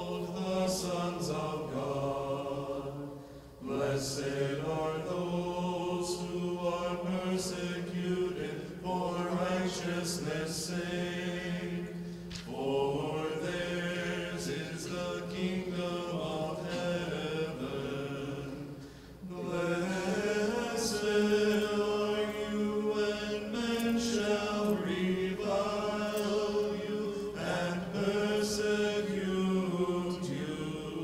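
Unaccompanied Orthodox liturgical chant: voices sing a melody over a steady held low note, in long phrases with brief breaks for breath about 3 s, 12 s and 19 s in.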